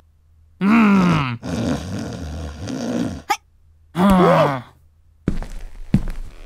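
A dubbed cartoon character's voice groaning in distress: two loud falling groans, about a second in and around four seconds, with a rougher grumbling stretch between them. A few sharp knocks come near the end.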